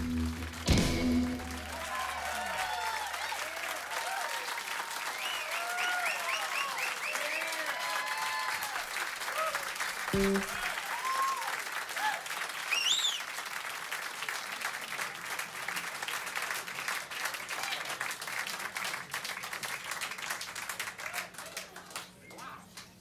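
Club audience applauding and cheering, with a whistle about halfway through, while the band's final chord rings out and fades over the first few seconds; the applause thins out near the end.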